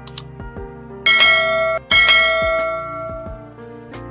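Subscribe-animation sound effects: a quick double mouse click, then two bright bell dings about a second apart, each ringing out, over background music.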